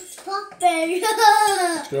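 A young girl's high voice singing a few wordless, drawn-out notes that slide downward near the end.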